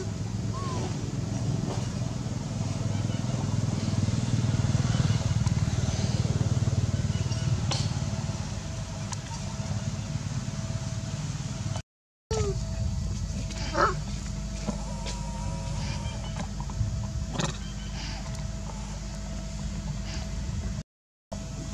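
Outdoor background with a low, steady rumble that grows louder in the middle and then eases, and a few brief high squeaks or chirps, one near the start and several after a short break about twelve seconds in.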